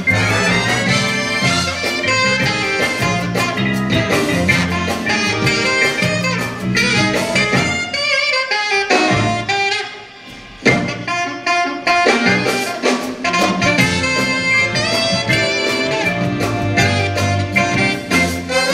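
Jazz big band playing a swing arrangement, with saxophones, trumpets, trombones and rhythm section. The band thins to a quieter passage about eight seconds in, then comes back in together sharply about two seconds later.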